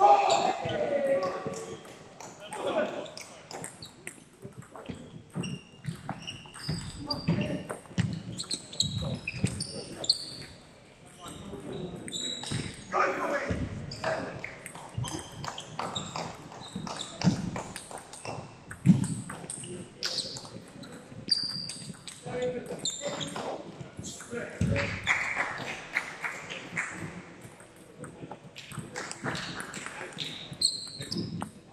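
Table tennis ball clicking off bats and table in quick rallies, echoing in a large sports hall, with indistinct voices around.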